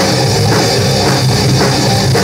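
Heavy metal band playing live: distorted electric guitars and bass over a drum kit, loud and dense, with the drums hitting a few times a second.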